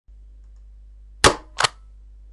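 Two sharp bang-like intro sound effects about a third of a second apart, the first louder, over a low steady hum.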